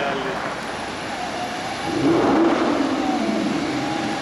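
A sports car's engine accelerating past on a city street, getting louder about two seconds in, its note sliding slightly lower as it goes by, over general street traffic noise.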